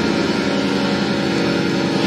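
Live chamber ensemble of bowed strings, woodwinds, saxophones and harp holding a loud, dense chord together.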